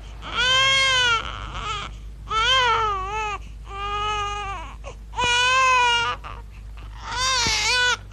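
Newborn baby crying: five wails of about a second each with short breaths between, each rising and falling in pitch.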